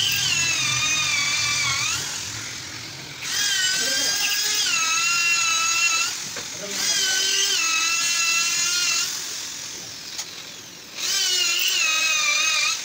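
Small handheld electric drill boring into wood, run in four bursts of two to three seconds; its high whine dips and wavers in pitch as the bit loads up, then winds down between bursts.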